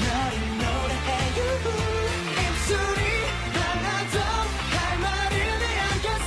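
K-pop boy group's upbeat pop song: several male voices singing over a backing track with a heavy, steady bass beat.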